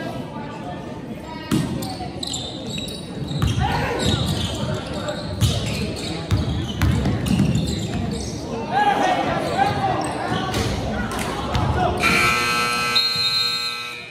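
Basketball game in a gym: the ball thumps on the hardwood while players and spectators shout. Near the end a buzzer sounds for about two seconds.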